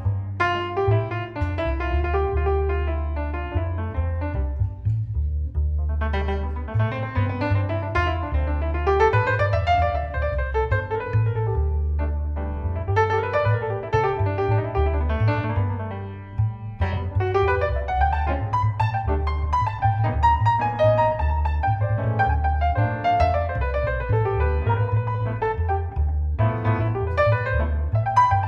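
A jazz recording playing back, piano over a low, moving bass line, heard through a dynamic EQ with one band pulled down into a narrow cut. The music dips briefly about sixteen seconds in.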